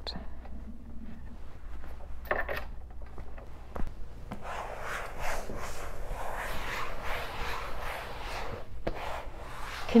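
Paper towel rubbed over surfaces damp with disinfectant spray, first the dental unit's hose holsters and then the upholstered dental chair back: the wiping of the cleaning step. The rubbing swishes become louder and nearly continuous from about four seconds in.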